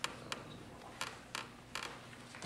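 Sheets of paper being handled and turned over, in five short rustles over about two seconds.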